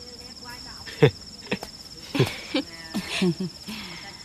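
Crickets chirring in a steady, high, pulsing trill throughout, with a single sharp knock about a second in, the loudest sound.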